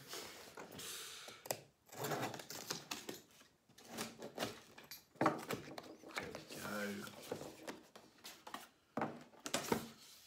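A knife slitting the packing tape on a small cardboard box and the flaps being pulled open: irregular bursts of scratching, tearing and rustling cardboard.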